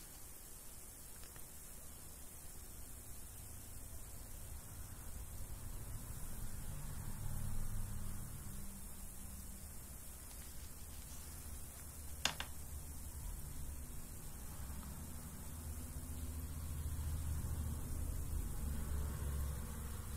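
Quiet room tone: a low hum that swells and fades with a faint steady hiss, and a single faint click about twelve seconds in.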